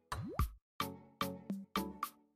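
Background music of short plucked notes, each dying away quickly in a steady rhythm. A quick rising 'bloop' sound effect comes just after the start.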